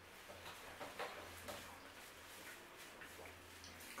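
Faint eating sounds: a few small chewing and mouth clicks while eating a sesame-bun burger, with light rustling of a paper napkin.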